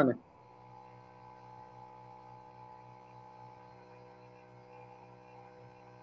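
Faint, steady electrical hum made of several fixed tones, with no change throughout, after one short spoken word at the start.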